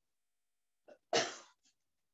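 A woman's single sharp, explosive cough-like burst about a second in, trailing off quickly.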